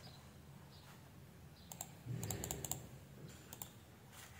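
Faint clicking at a computer: a quick run of clicks around the middle and two more near the end. A brief low rumble comes with the middle clicks.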